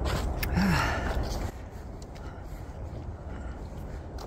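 A person's breath, a gasp or short breathy vocal sound, in the first second and a half, followed by a quieter steady low rumble.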